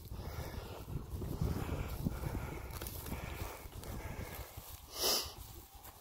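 Footsteps through pasture grass over a low, uneven rumble, with one short breathy hiss about five seconds in.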